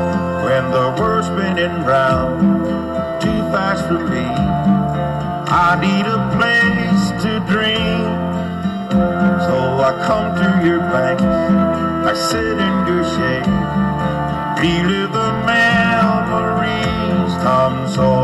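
Instrumental break of a country song: a band playing, with guitar to the fore and no singing.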